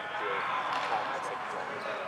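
Background chatter of several distant voices, low and continuous.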